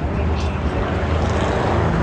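GT race cars' engines running on a street circuit, heard at a distance as a steady low rumble, with a faint rising engine note near the end as cars approach.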